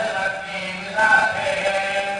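Devotional chanting by voices in sustained notes that change pitch about a second in, over a steady low drone.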